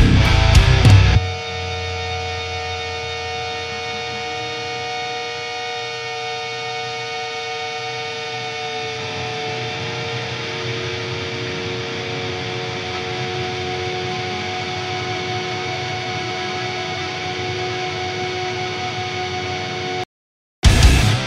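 Hardcore band playing loud distorted music for about a second, then breaking off to leave sustained distorted electric guitar tones droning steadily. One of the tones steps down in pitch about halfway through.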